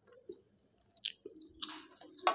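Close-miked chewing of fried samosa pastry, quiet at first, with sharp crunches about a second in and again near the end.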